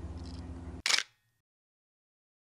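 A DSLR camera shutter clicks once, sharp and brief, about a second in. Before it a steady low hum runs, stopping just before the click.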